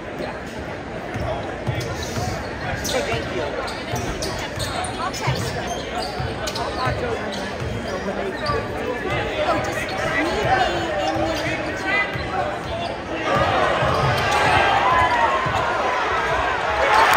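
Basketball being dribbled on a hardwood gym floor over steady crowd chatter in a large echoing gym; the crowd noise rises sharply about three-quarters of the way through.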